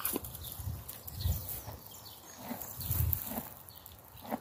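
A horse chewing a mouthful of hand-fed grass close to the microphone: crisp crunches a little under a second apart, with two louder low puffs about a second and three seconds in.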